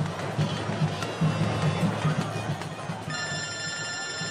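A noisy street crowd with music and a pulsing drum beat. About three seconds in, a steady high ringing tone of several pitches starts and holds.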